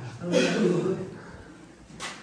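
A man's short, breathy vocal sound about half a second in, fading out within a second.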